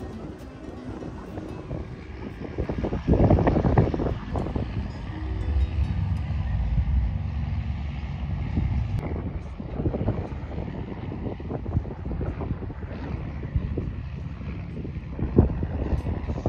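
Low, steady rumble of a vehicle engine, with wind buffeting the microphone and a louder surge about three seconds in.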